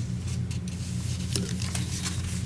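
Sheets of paper rustling and crinkling faintly as pages are handled and turned, over a steady low electrical hum.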